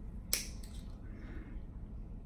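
Podiatry nail nippers clipping a thick fungal toenail: one sharp snap about a third of a second in, with a fainter click just after.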